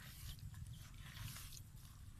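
Bare hands digging into wet mud and soil, scooping and breaking up clods in a few short, faint scraping bursts.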